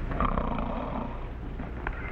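A sleeping man snoring: one snore lasting about a second, starting just after the start.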